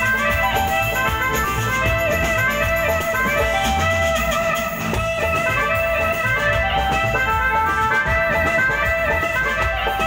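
A live band playing an instrumental passage through a PA: a lead melody of quick, separate notes runs over a bass and drum beat.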